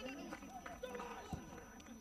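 Several voices shouting and calling over one another in a goal celebration, with a few sharp clicks among them.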